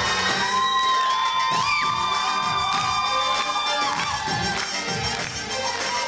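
Oriental dance music for a belly dance number, with the audience cheering over it; long high calls are held from about a second in to about four seconds.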